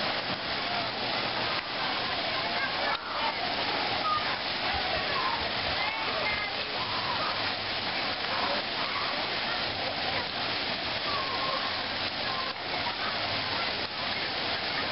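Steady rush of water pouring and spraying down from a water-park play structure, with children's voices in the background.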